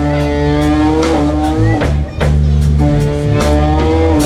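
Live blues band playing through a PA: electric guitar, bass and drum kit, with a lead part holding long, slightly bent notes over the beat. The band drops out briefly about halfway through, then comes back in.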